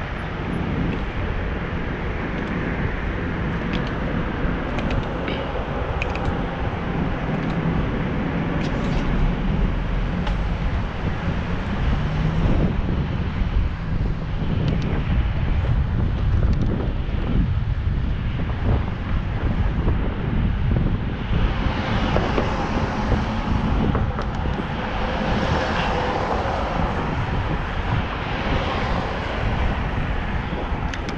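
Wind buffeting the microphone of a camera on a moving bicycle, a steady low rumble, with road and traffic noise beneath it. A hissier vehicle noise grows louder from about two-thirds of the way in.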